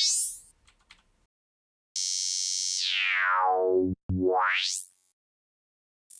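Serum software synth playing a bandpass-sweep wavetable. The tail of a rising sweep ends about half a second in. After a pause, a sweep falls in pitch for about two seconds, then turns straight into one that rises for about a second.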